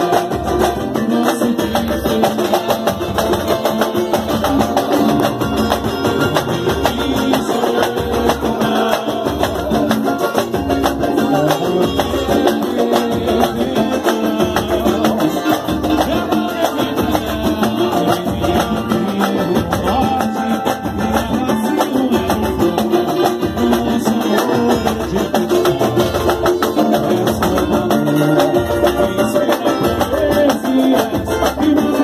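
Live pagode band playing: a cavaquinho strumming over samba percussion of surdo, tantã, congas and pandeiro, keeping a steady, driving beat.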